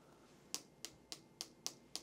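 A quick run of light, sharp clicks, evenly spaced at about three or four a second, starting about half a second in.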